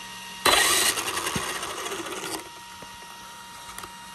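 Traxxas Sledge RC truck's electric motor and drivetrain spinning up on throttle for about two seconds with a fast rattle, loudest at the start and then tapering off. The wheels turn with no load on them, but only the front ones are driven: the owner puts this down to something in the rear diff.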